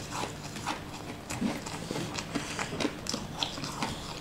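Crunching and chewing of a crumbly, crystal-crusted purple sweet being bitten and eaten: a quick, irregular run of crisp crackles.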